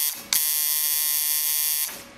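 Coil tattoo machine running with a steady electric buzz: a short burst, a brief break, then about a second and a half of buzzing that cuts off just before the end.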